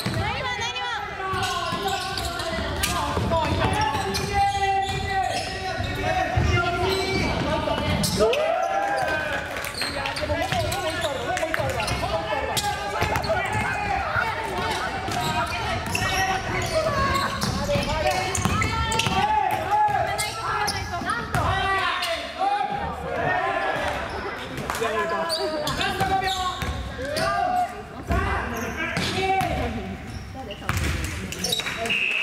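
Basketball bouncing and being dribbled on a hardwood gym floor during play, with players' voices calling out throughout. The sound echoes in a large gymnasium.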